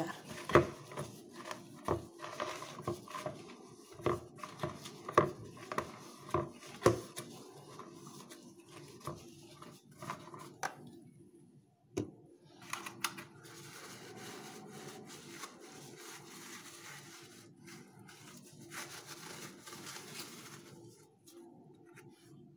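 Paper towel rubbing around the inside of a plastic gelatin mold as it is oiled, with many light clacks and knocks of the plastic being handled and turned, then a steadier soft wiping in the second half.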